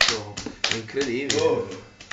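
Quick, irregular hand slaps mixed with a man's voice chanting.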